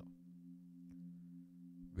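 Faint steady low drone of two held tones in a pause between spoken phrases, with one faint tick about halfway through.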